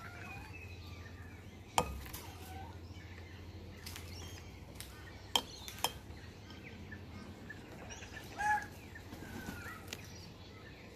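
Laughing kookaburra's bill striking the bowl as it snatches food pellets: a sharp click about two seconds in and two more close together midway. Faint chirps and whistles of other birds run underneath, with one louder whistled call near the end.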